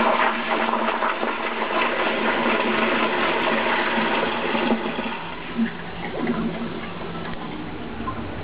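TOTO C480N siphon-jet toilet flushing: water rushing and swirling through the bowl, a steady rush that eases off after about five seconds.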